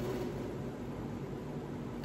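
Steady low hum and hiss of room background noise, like a fan or air conditioner, with no distinct events.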